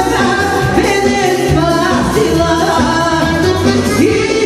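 Loud band music with a singer, steady and unbroken, filling the hall while guests dance.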